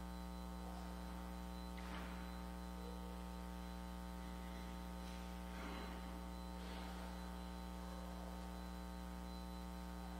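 Steady electrical mains hum with many overtones, running unbroken under the audio feed. A few faint, brief sounds rise above it about two, six and seven seconds in.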